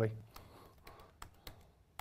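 Typing on a laptop keyboard: a handful of faint keystroke clicks, irregularly spaced.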